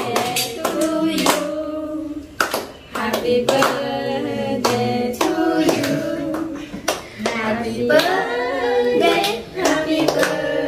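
A small group of young people singing a birthday song together in a small room, clapping along.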